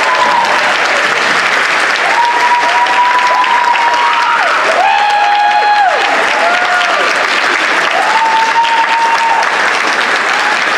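Audience applauding and cheering, steady clapping with a string of drawn-out whoops that rise, hold and fall, one overlapping the next.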